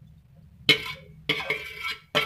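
A spoon scraping grated carrot out of a steel bowl into a pan, in two short scraping clatters, the second one longer.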